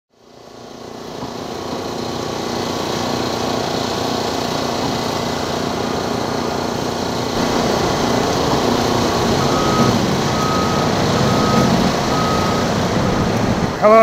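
Heavy vehicle engine running steadily at a road construction site, fading in at the start. A back-up alarm beeps about four times, roughly once a second, in the second half.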